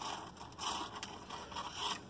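Soft, irregular rustling and scraping from something being handled or rubbed close to the microphone.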